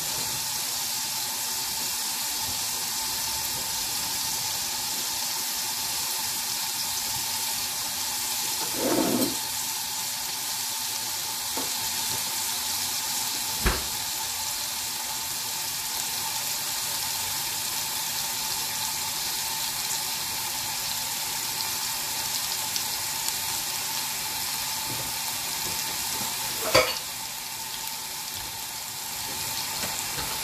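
Chopped onion and cumin seeds sizzling steadily in oil in a stainless steel saucepan on a gas hob. Two sharp clicks stand out, one about halfway and a louder one near the end.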